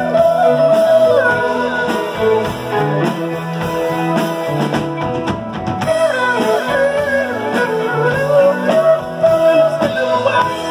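Live rock band playing a song: electric guitar, keyboard and drums, with a lead melody line gliding up and down over them.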